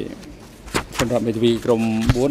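A man speaking with drawn-out syllables, after a sharp click about three quarters of a second in.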